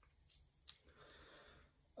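Near silence: room tone, with one faint click a little over half a second in and a faint breath near the end.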